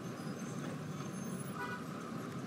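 Low, steady background ambience: an even noise with no distinct events.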